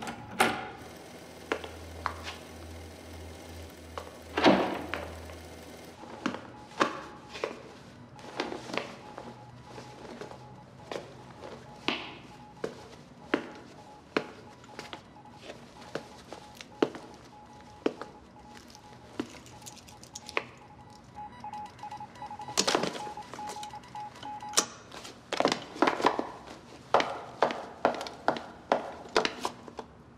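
Hard-soled footsteps on a hard floor, about two steps a second, with a faint steady high tone that comes and goes.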